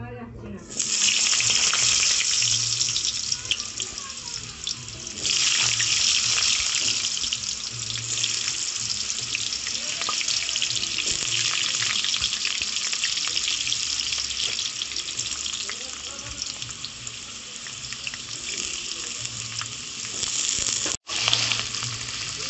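Potato chunks frying in hot oil in a metal kadai: a loud, steady sizzle that starts about a second in, eases back around four seconds in, then swells again about five seconds in and carries on. It breaks off for a moment near the end.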